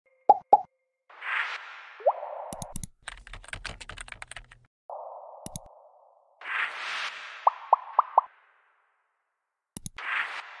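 Interface animation sound effects: two quick pops, short whooshes, then a fast run of keyboard typing clicks for about a second and a half as the search words appear, a single click, and a quick series of four pops.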